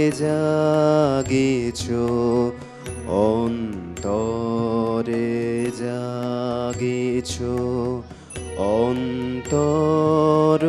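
A man sings a Bengali song in long, gliding phrases, accompanying himself on a harmonium whose reeds hold steady sustained notes underneath. There are short breaths between phrases about three and eight seconds in.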